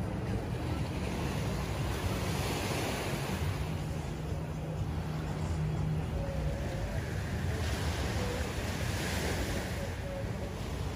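Sea waves washing gently against a rocky shore, with wind buffeting the microphone in a steady low rumble.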